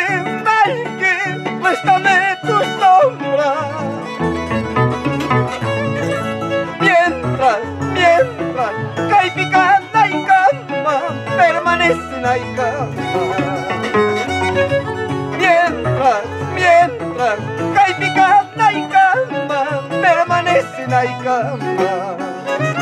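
Violin playing a lilting melody with vibrato over an Andean harp's plucked bass notes and chords: an instrumental passage of an Andean folk tune.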